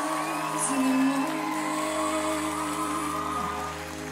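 Slow power-ballad intro of held, sustained chords, with a brief audience whoop or cheer about half a second in.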